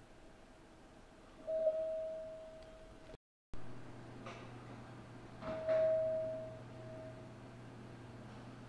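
A clear single-pitched chime rings out about a second and a half in and fades away. After a short break in the sound, two sharp knocks are followed by the same chime twice more, over a steady low hum.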